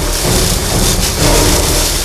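Film soundtrack under a fight scene: a loud, dense mix of low rumble and noise with a few faint held music tones, without speech.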